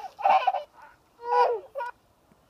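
A pet bird, a domestic fowl, giving about four short calls with gaps between them, each one bending in pitch.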